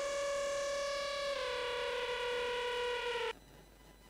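A sustained synthesizer tone, a Korg Monotron sound sampled into a Yamaha SU200 sampler, held on one pitch. It steps down slightly in pitch about a second in and cuts off suddenly near the end.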